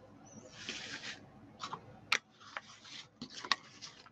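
Paper and card stock rustling and sliding on a desktop as pieces are handled, with a few sharp light taps in between.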